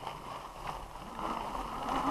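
Fat-tire electric bike rolling along pavement: tyre and wind noise on the bike-mounted microphone, growing louder about a second in as a low steady hum joins.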